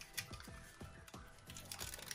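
Soft rustling and a few small clicks of electrical wires and a plastic switch being handled and pushed into a wall box, over faint background music.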